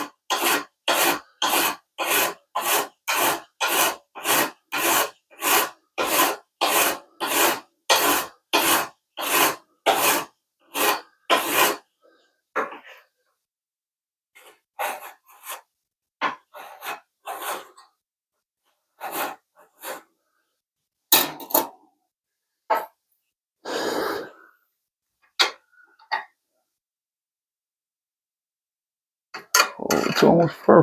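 A flat hand file rasping back and forth across the metal base plate of a DeWalt DCS573 circular saw in steady strokes, about two a second, for roughly twelve seconds. The file is taking down high spots so the plate sits flat and no longer rocks. After that come a few scattered scrapes and knocks.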